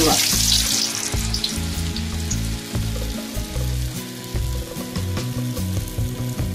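Medu vada of ground urad dal batter deep-frying in hot oil in a kadai. The sizzle is loudest in the first second as the vada is dropped in, then settles to a steady frying hiss.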